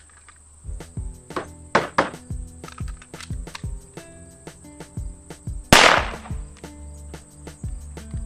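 Background music with a steady beat and a deep bass line, and one loud shot about six seconds in from a Hi-Point C9 9mm pistol firing a Pyrodex black-powder handload.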